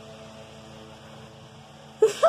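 Quiet room tone: a steady low electrical hum with a faint even hiss.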